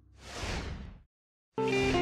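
A swoosh transition sound effect that swells and fades over about a second. After half a second of silence, a second swoosh leads straight into guitar music near the end.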